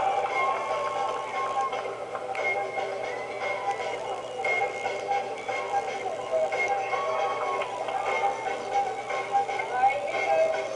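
Television programme sound played through the set's small speaker: a voice over background music, with little bass.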